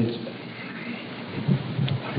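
Steady hiss and room noise of an old hall recording in a pause between sentences, with a couple of faint low thumps near the end.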